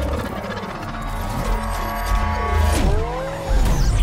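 Film sound mix of a car chase: sports car engines revving and tyres squealing over dramatic music. A deep rumble comes in about three and a half seconds in.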